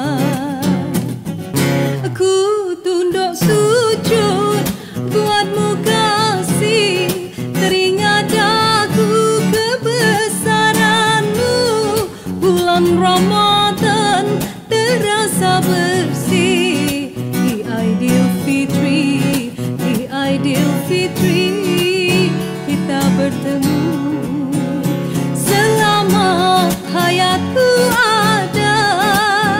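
A woman sings a slow Malay Hari Raya ballad with vibrato, accompanied by acoustic guitar.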